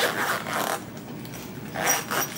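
Zipper on a fabric water-bottle pouch being pulled shut in two pulls, a longer one at the start and a short one near the end.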